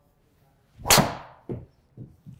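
A Cobra Darkspeed X driver swishing through the swing and striking a golf ball about a second in: a sharp, loud crack of the clubhead on the ball. A softer thud follows about half a second later.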